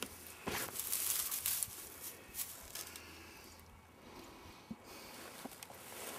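Irregular rustling and scuffing with a few light clicks from a handheld camera being moved about and brushing against clothing. The rustles are densest in the first second or so and thin out later.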